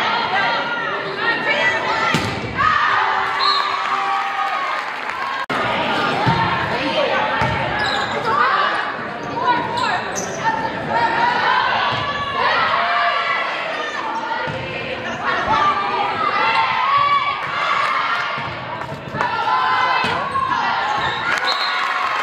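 Volleyball rally in a gym: several sharp hits of the ball under constant shouting and cheering from players and spectators, all echoing in the large hall.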